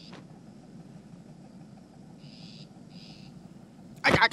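Faint outdoor ambience: a low steady hiss with two short high chirps a little past halfway, the second right after the first.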